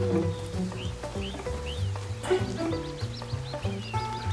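Background score with a low, steady bass line, and high bird-like chirps over it: a few single chirps in the first half, then a quick run of them in the second half.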